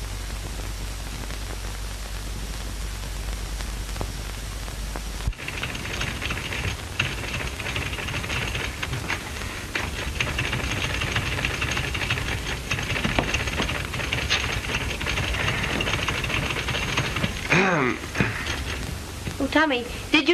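Steady hiss and hum of an early sound-film track for about five seconds, then typewriter keys clacking in quick, irregular strokes over the hiss. A brief voice sounds near the end.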